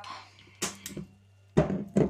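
Kitchen handling sounds from a plastic measuring cup and a glass mixing bowl as the last of a cup of fish sauce goes into the bowl. There are two light knocks, then a louder clunk about one and a half seconds in.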